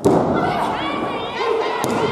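A wrestler's body thuds onto the ring mat right at the start, followed by shouting voices. Near the end a sharp slap is heard, the referee's hand striking the mat as the pin count begins.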